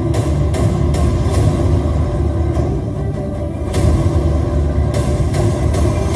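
Dramatic background music with a heavy, steady low rumble and occasional sharp accents, played through a large hall's sound system.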